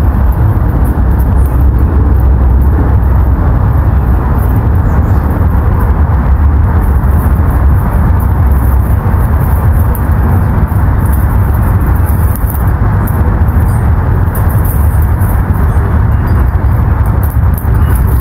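Loud, steady rumble of wind buffeting the microphone, fluttering in level without a break.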